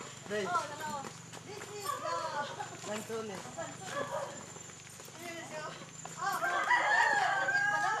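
A rooster crowing: one long, held call over the last two seconds, the loudest sound here.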